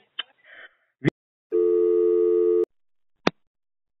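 A telephone line tone: a click, then a single steady beep about a second long, then another click, as the next phone call connects.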